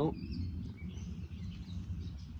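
Birds chirping faintly in short scattered calls over a steady low rumble.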